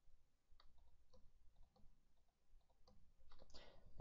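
Faint computer mouse clicks, a handful of separate clicks over near-silent room tone.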